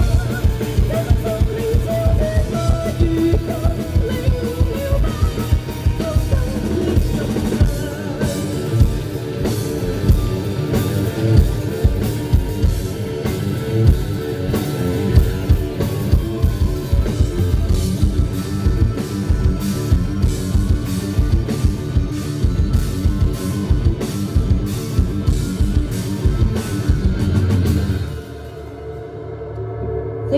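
Live rock band with electric guitars, bass and a drum kit, and a woman singing over the first several seconds. The band then plays on with steady drumming and cymbals until the song stops about two seconds before the end, leaving a ringing tail.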